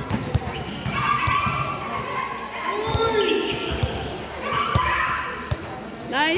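A basketball bouncing on a hard court floor, irregular dribbles and thuds echoing in a large covered hall, with players' distant voices in the background.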